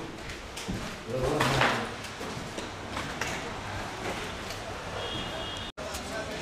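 A person's voice briefly, about a second in, over a steady noisy background with a few scattered knocks; the sound drops out for an instant near the end.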